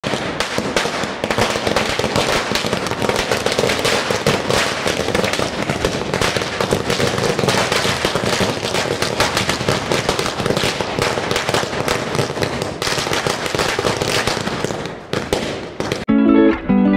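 Firecrackers going off on the ground in a rapid, continuous string of bangs that thins out near the end.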